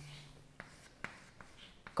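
Chalk writing on a chalkboard: faint scratching with three sharp taps as the chalk strikes the board. At the start, the drawn-out end of a spoken word fades away.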